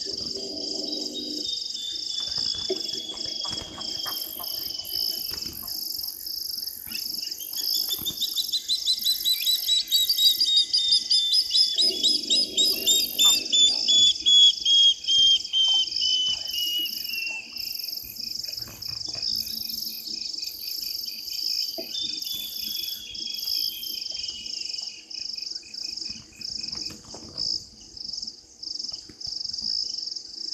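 Night ambience of steady pulsed insect chirping, over which a bird calls a long series of rapid notes that climbs in pitch and grows louder, then falls away. A second, shorter series falls in pitch a few seconds later.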